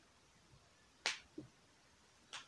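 Clicks at a computer while a value is typed in and confirmed: a sharp click about a second in, then a softer, lower knock.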